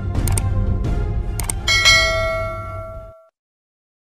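Channel logo outro music: a low rumble with a few sharp ticks, then a bell-like chime about a second and a half in that rings out and fades, ending about three seconds in.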